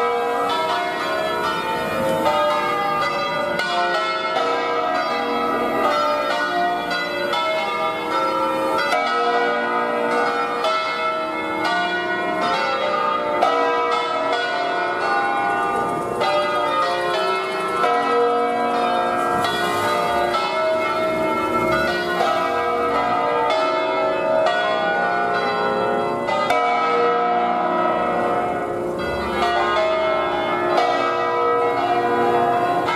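Church bells from a 1951 Ottolina peal, swung full circle together in a distesa, with their strikes overlapping in a continuous, loud clangour of many ringing tones.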